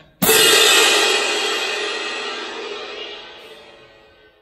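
A pair of Paiste hand-held crash cymbals clashed together once, the crash ringing on and slowly dying away over about four seconds.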